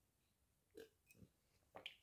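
Near silence with a few faint swallowing sounds of a person drinking water from a glass.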